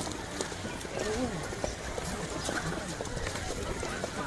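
Indistinct voices of several people talking in the background outdoors, faint and unintelligible, over a steady noisy background with a few short clicks.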